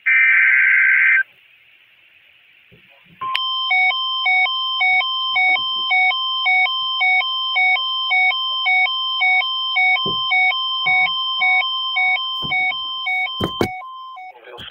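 The last of an Emergency Alert System SAME digital header's warbling data bursts from NOAA Weather Radio, then after a short pause a loud alert tone alternating between two pitches about twice a second, signalling an incoming warning. It runs about ten seconds and cuts off with a couple of clicks near the end.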